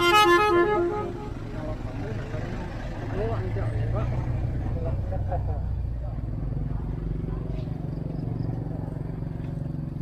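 A short stretch of melody ends about a second in. After that a low, steady engine hum continues, from a motorbike idling beside the lychee loading, with faint voices in the background.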